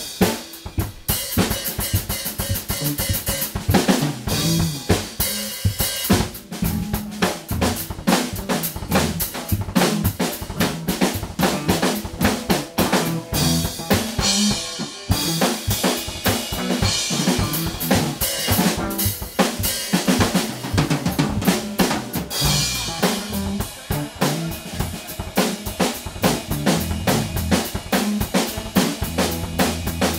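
Live band playing a jam, led by a drum kit with steady bass-drum and snare strokes, over electric bass and electric guitar.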